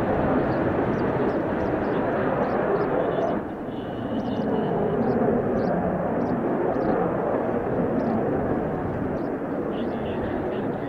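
Jet noise from an F-4EJ Kai Phantom II's twin J79 turbojets as it climbs away, a dense steady rush that dips briefly about a third of the way in. Strong wind buffets the microphone through its windscreen.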